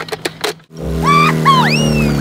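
A few quick clicks, a brief drop-out, then an added cartoon sound effect: a steady engine-like hum with whistle-like glides swooping up and down above it.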